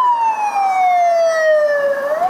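Police vehicle siren wailing as the vehicle drives close past: the tone falls slowly over about two seconds, then starts sweeping back up near the end.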